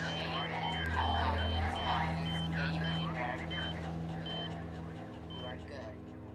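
Overlapping voices over a short, high electronic beep that repeats quickly at first, then slows and spaces out as the voices die away; a low steady hum runs underneath.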